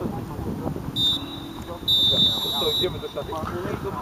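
Football referee's whistle: a short blast about a second in, then a longer, steady blast of about a second.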